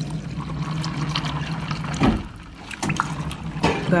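Water pouring from a hospital water dispenser into a double-stacked foam cup, over a steady low hum. There is a knock about two seconds in, then the pouring briefly quietens before it picks up again.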